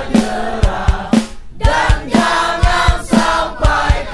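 Background music: voices singing over a steady drum beat.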